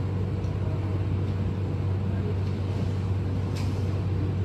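Steady low hum of room noise, with a couple of faint clicks.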